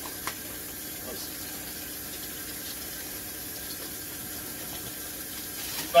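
A steady, even background hiss of room noise with no clear event, apart from a faint click shortly after the start.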